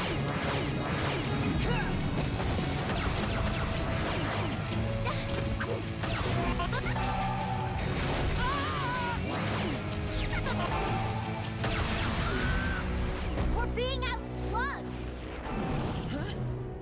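Cartoon battle sound effects: repeated blaster shots, smashes and impacts over a driving action score, with a laugh about two seconds in and a few short squeaky rising and falling squeals in the second half.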